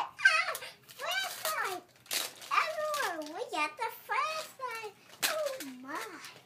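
A young girl's voice talking in a run of short, high phrases that swoop up and down in pitch.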